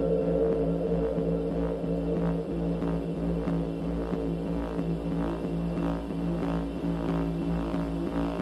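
Electronic techno music: a sustained drone chord over a pulsing deep bass, with soft swishes repeating about every half second.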